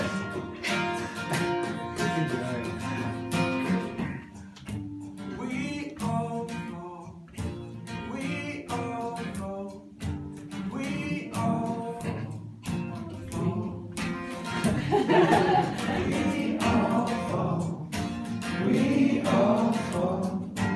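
Acoustic guitar strummed steadily with a harmonica playing the melody over it. The playing grows louder near the end.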